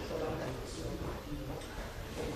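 Indistinct voices of people talking over the background commotion of a busy gym hall.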